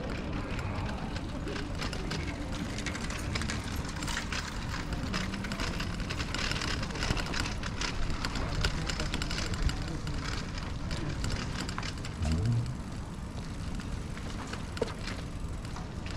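Bicycle riding over cobblestones: a steady rumble with many small rattling clicks.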